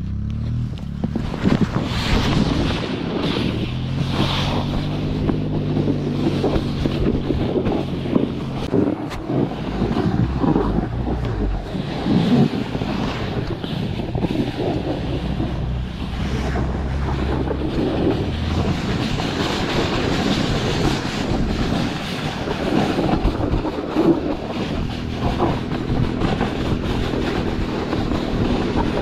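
Rushing wind on the microphone and a snow kneeboard hissing and scraping over packed snow as it is towed. Behind this, the 150cc engine of the Polaris Hammerhead GTS 150 go-kart pulling it runs steadily ahead.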